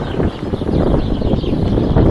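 Wind rumbling and buffeting on the microphone, a steady low noise outdoors.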